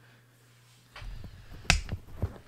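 Rumbling handling noise as the handheld camera is moved, with a single sharp, snap-like click about three-quarters of the way through.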